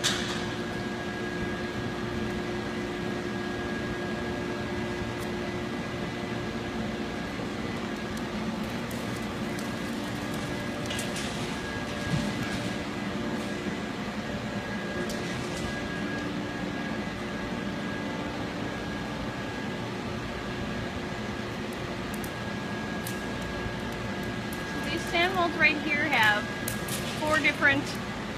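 Steady foundry machinery and fan hum holding several even tones, with a faint knock about halfway through. A voice speaks near the end.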